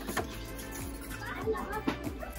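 Shop background sound: faint music playing under distant voices, including children's.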